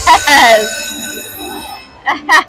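Video slot machine ringing out electronic bell-like chimes that fade away, its sound for six fireball symbols landing to trigger the hold-and-spin bonus. A man's excited shout and laugh are heard over it.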